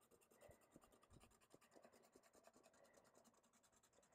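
Very faint scratching of a water-based felt-tip marker making many quick, short strokes on paper along the edge of a torn-paper stencil.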